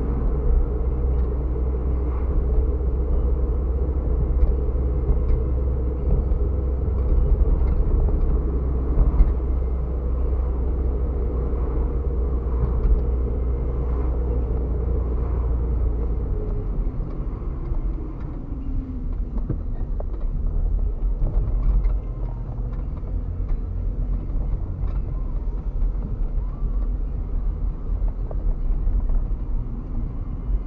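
A car driving, heard from inside the cabin: a steady low engine and road rumble. A higher engine note falls away about halfway through, and the rumble is lighter after that.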